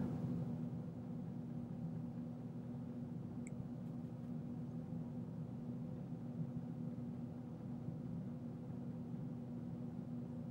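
Quiet room tone with a steady low hum, and one faint tick about three and a half seconds in.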